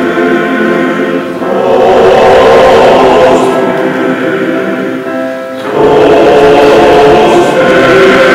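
Men's choir singing sustained chords in several parts, growing louder about two seconds in, easing off, then swelling again near six seconds.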